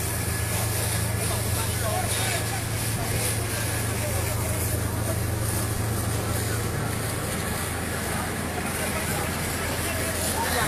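Steady rushing noise with a low hum as hoses play on a burning fuel tanker, with people's voices in the background.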